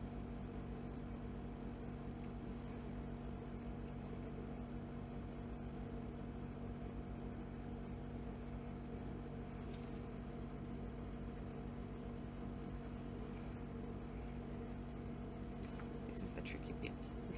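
Steady low background hum made of several fixed tones, unchanging throughout, with no speech.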